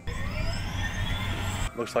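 Helicopter with a low rotor rumble under a rising turbine whine, cutting off abruptly near the end.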